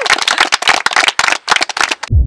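A group of people clapping, a dense patter of claps that thins out in the second half and stops abruptly at the end.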